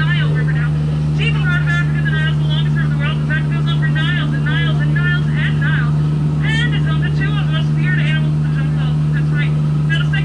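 A tour boat's motor running with a steady low hum as the boat moves along the river, with quick, high, bird-like chirps repeating several times a second over it.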